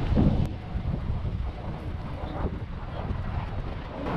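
Wind buffeting the camera's microphone while riding along: a low, uneven rumble.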